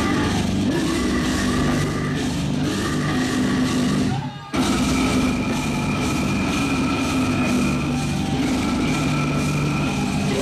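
Metalcore band playing live through a club PA: distorted guitars, fast drumming and vocals. The band stops dead for a split second about four seconds in, then crashes back in.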